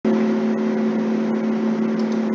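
Steady low hum of a few held tones over a constant hiss, unchanging throughout.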